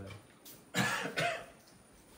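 A man coughing twice in quick succession, two short breathy bursts, the first the louder.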